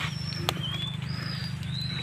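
Birds chirping: four short, thin whistled notes, a couple of them rising, over a steady low hum, with a single sharp click about half a second in.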